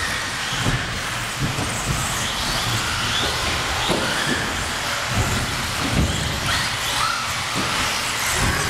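1/10-scale 4WD electric RC buggies racing: high-pitched motor and gear whine rising and falling with the throttle, with several low thumps as buggies land off jumps on the carpet track.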